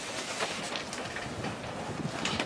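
Faint, irregular knocks and rattles of a person climbing into a sheet-metal box trailer loaded with wooden hive boxes, over a steady background hiss.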